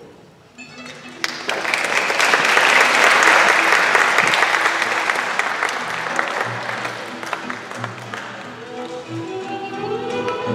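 Audience applause in a school auditorium starts about a second in, swells, then slowly dies away. Recorded string music for the blackout scene change comes in just over halfway through.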